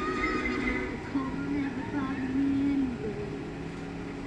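Light-show music fading out in the first second, then a drawn-out, wavering human voice for about two seconds.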